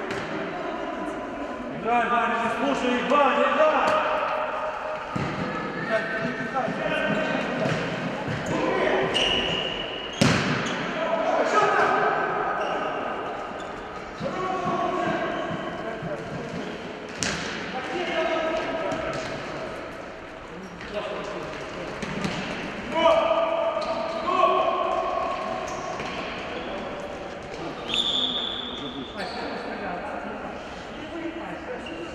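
Futsal game in a sports hall: players' voices calling out, echoing in the hall, with the sharp knocks of the ball being kicked and bouncing on the hard floor. The clearest kicks come about ten and seventeen seconds in.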